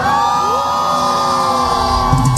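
Concert crowd cheering, with several high, long-held screams that slide up in pitch, during a gap in the drums.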